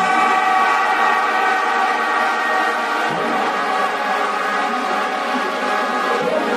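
Techno track in a breakdown: a sustained, layered synth drone with no kick drum or bass.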